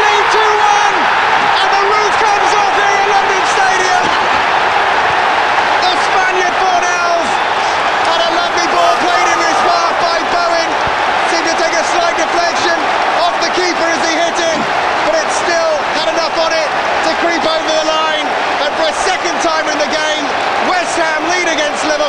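Football stadium crowd cheering loudly and steadily: the home supporters celebrating a goal, many voices together.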